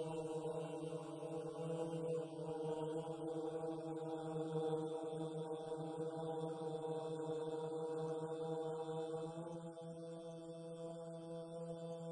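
A long, sustained 'Om' chanted on one steady pitch through a microphone, held unbroken for the whole stretch.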